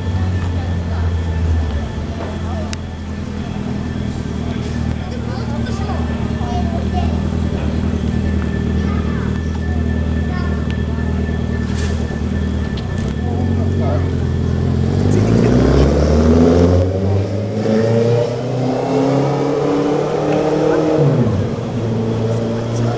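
An engine runs low and steady, then revs up over about five seconds, rising in pitch, and drops away sharply near the end.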